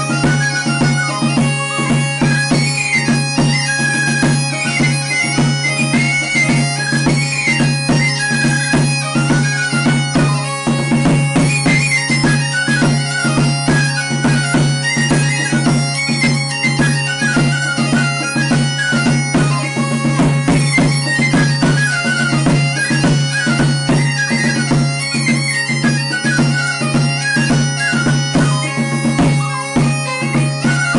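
Mallorcan xeremia bagpipe and a flabiol pipe with tamborí drum playing a folk tune together. The bagpipe's steady drone runs under a moving high melody, with a steady drumbeat.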